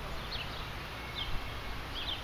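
A small bird chirping a few short, high, falling notes, over a steady low outdoor background rumble.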